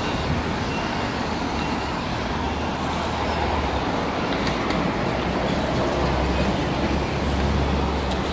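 Steady road traffic noise: a continuous wash of passing vehicles with a low engine rumble that grows stronger in the last couple of seconds.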